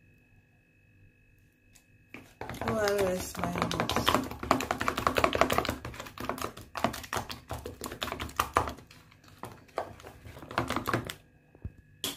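Metal spoon stirring a thick paste in a plastic tub, a rapid run of clicks and scrapes against the tub for about seven seconds, starting a few seconds in.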